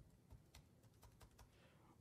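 Faint typing on a computer keyboard: a run of separate keystroke clicks.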